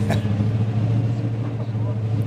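A drift car's engine idling with a steady low hum.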